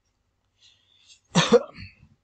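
A man coughing once, a short cough in two quick bursts with a smaller one after, about a second and a half in.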